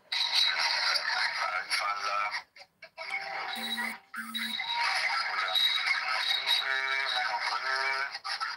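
Music with a voice over it, played back from a phone's speaker, with two short electronic tones a little before the middle.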